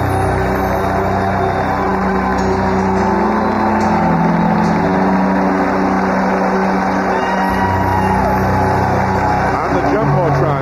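Music over a ballpark's public-address system, with long held chords that change every few seconds, over the steady noise of a large stadium crowd, heard through an old radio broadcast.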